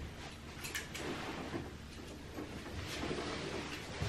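Soft rustling and a few faint clicks over a steady low background hum, as a sleeping baby is laid down in a crib.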